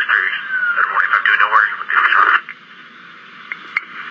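Police dispatch radio: a voice over the narrow, tinny radio channel for about the first two and a half seconds, then the open channel's low steady hiss with a couple of faint clicks.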